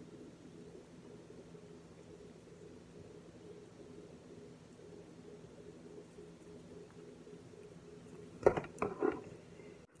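A faint, steady low hum; about eight and a half seconds in, a metal utensil knocks and scrapes against the pan a few times as it stirs the frying chicken.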